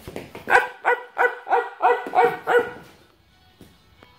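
Shih Tzu barking in play, about seven quick high barks in a row, roughly three a second, stopping before three seconds in.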